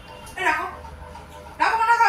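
A dog whimpering twice: two short, high cries about a second apart, the second louder and near the end.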